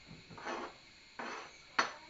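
A spoon scraping chopped vegetables off a plate into a saucepan: a few short scrapes, then one sharp clink of the spoon on the plate near the end.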